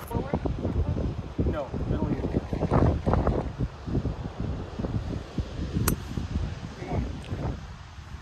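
Wind buffeting the microphone, with murmured voices in the first few seconds, then a single sharp click of a golf club striking the ball about six seconds in.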